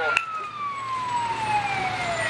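Fire apparatus siren on a slow wail, its pitch falling steadily in one long sweep, with a sharp click just after the start.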